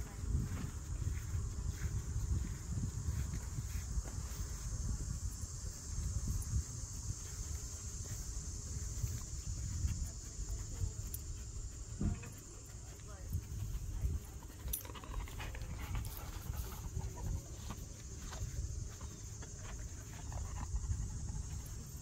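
Outdoor ambience: a steady high drone of insects over a constant low rumble, with faint sounds of a dog moving about.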